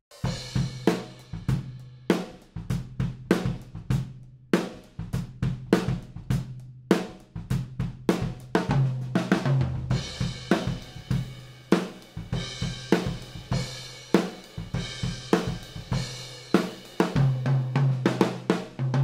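Acoustic drum kit played in a steady groove, with kick, snare and cymbals, as picked up by only a pair of AEA N8 figure-eight ribbon microphones in ORTF as overheads. There are brief breaks in the playing about four and a half and seven seconds in.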